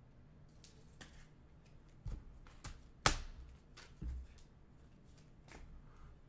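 Trading cards and a clear plastic rigid card holder being handled, with scattered light clicks and taps and one sharp click a little past halfway.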